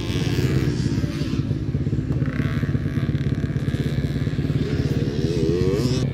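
Dirt bike engine running, a rough, steady rumble with fast firing pulses. Its pitch wavers up and down near the end.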